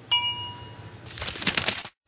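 A single bright ding sound effect rings out and fades within about half a second. About a second in comes a short noisy rush that cuts off suddenly.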